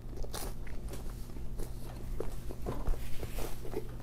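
Close-up chewing of a mouthful of bagel, with many small, irregular wet clicks and crunches from the mouth.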